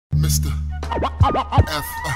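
Hip hop beat opening on a held deep bass note, then, just under a second in, turntable scratching: a record swept back and forth in quick rising and falling strokes.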